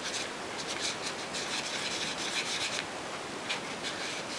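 Concealer applicator rubbing against the skin of the face in bursts of quick short strokes, with a hissy sound.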